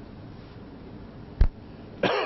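A single sharp knock of a snooker ball, with a dull low thud under the click, as the balls run out of the pack after the shot.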